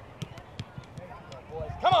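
Soccer balls being kicked and trapped on artificial turf, a scatter of short sharp thuds from several players passing at once, with running footsteps.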